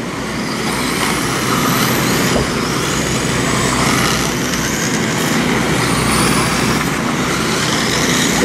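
Electric RC dirt modified race cars with 17.5-turn brushless motors running laps on a clay oval. A steady hiss of the cars on the dirt, with high motor whines rising and falling as they pass.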